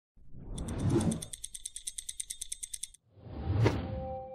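Produced intro sound effects: a whoosh, then rapid stopwatch-style ticking at about ten ticks a second that stops abruptly near three seconds, then a second whoosh building to a sharp hit near the end.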